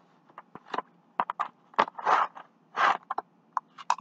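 A cardboard box being opened and its contents pulled out of plastic packaging: irregular scrapes, crinkles and rustles with a few sharp clicks.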